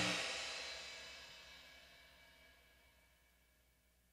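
The last chord of a hard-rock song, with cymbals and guitar ringing out and fading away over about two seconds into near silence.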